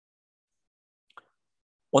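Near silence, broken by a single brief faint click a little over a second in; a man's voice starts speaking at the very end.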